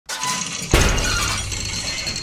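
A cartoon crash sound effect: a sudden loud crash under a second in, followed by clattering and rattling, with music.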